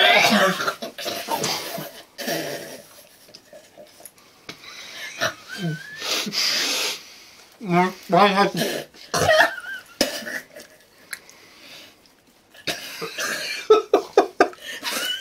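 Several people coughing, breathing hard and laughing in short, irregular bursts with their mouths full, struggling to get down whole pieces of jellied eel.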